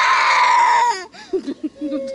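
A young girl's loud, drawn-out crying wail that stops after about a second. She is crying from pain after a fall in which she scraped herself.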